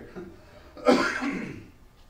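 A man coughs once about a second in, a sudden cough that trails off quickly.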